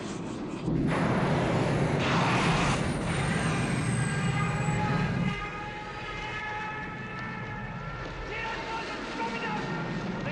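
Film soundtrack of a small jet aircraft in flight: steady engine noise with a rushing whoosh about two seconds in and a faint falling whine. After about five seconds the engine noise drops and steady held tones take over, with voices under them.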